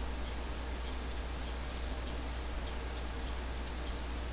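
Steady low electrical hum with hiss in the background of the recording, and a few faint ticks.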